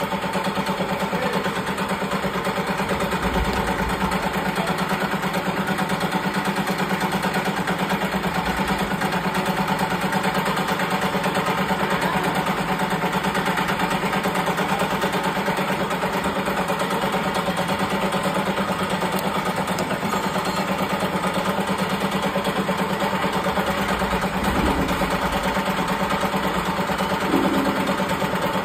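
Mush cutter grain machine running steadily: a continuous motor-driven drone with a strong low hum, unchanging throughout as it processes grain.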